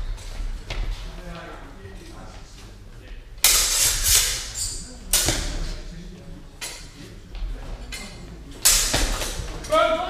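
Training longswords clashing three times, each a sharp strike that rings and dies away in a large echoing hall, about a third, half and nine-tenths of the way through.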